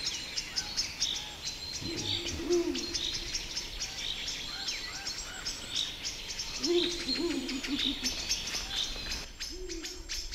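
Ural owl hooting: a deep phrase about two seconds in, another around seven seconds, and a shorter one near the end. Small forest birds keep up repeated high chirping calls behind it.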